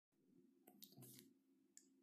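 Near silence: faint room tone with a low steady hum and a few soft clicks in the first second or so.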